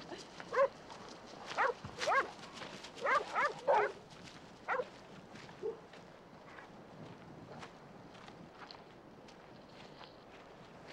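A dog barking in a run of short, sharp barks through the first five seconds, after which only faint background sound remains.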